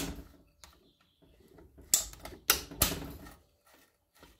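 Gears and shift mechanism of a cutaway Jawa 50 Pionier engine being worked by hand, giving sharp metallic clacks. There is one clack at the start and three more close together between about two and three seconds in, with light rattling between them.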